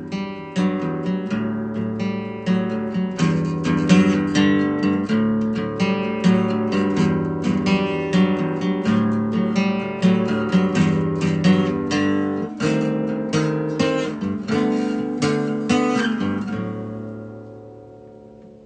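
Acoustic guitar strummed in steady chords, the song's instrumental ending. The last chord rings and fades away near the end.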